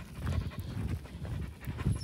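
A Portuguese Water Dog panting while heeling beside its handler.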